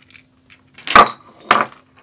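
Two loud, sudden metallic jingles about half a second apart, like small metal objects jangling, over a faint steady hum.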